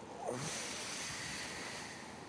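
A brief murmur of a voice, then a soft, even hiss for over a second.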